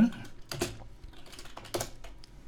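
Typing on a computer keyboard: a few irregular key clicks, one louder near the end, as a search query is entered into Google.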